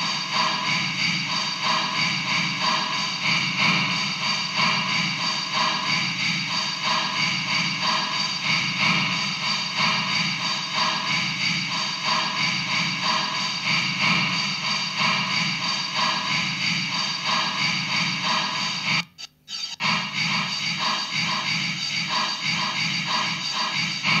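Casio CZ-230S bossa nova rhythm pattern with a steady beat, played through an Alesis Midiverb 4 effects processor preset. Near the end the sound drops out for about half a second as the preset changes, then resumes.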